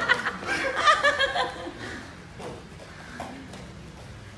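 A person chuckling and laughing for about the first second and a half, then quieter, with a few faint knocks.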